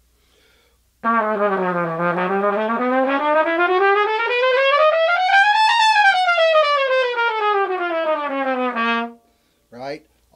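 Raw-brass B-flat trumpet played in one long unbroken run: it dips to a low note, climbs steadily to a high note, then comes back down and holds a low note briefly before stopping. It is a demonstration of the trumpet's range from low to high.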